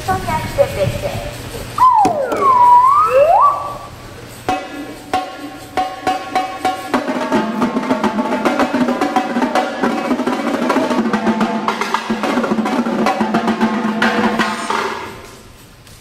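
A man's voice speaking French with wide up-and-down pitch sweeps. From about four seconds in, a marching tenor drum line (quads) plays a fast, even lick of pitched drum strokes, fading out near the end.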